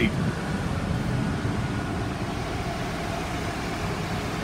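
Ford 6.7-litre Power Stroke V8 diesel idling steadily in a 2015 F-550 bus.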